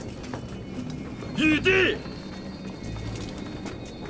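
Drama soundtrack with steady background music and one short, loud two-part cry about a second and a half in.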